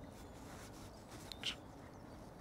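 Faint clicks of fishing tackle being handled while the hook is rebaited, two close together about a second and a half in, over a quiet outdoor background.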